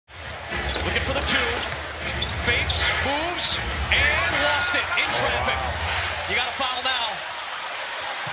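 Basketball game sound from the court: a ball being dribbled on hardwood and sneakers squeaking, over a steady arena crowd rumble with voices shouting. A long sneaker squeal comes about four seconds in.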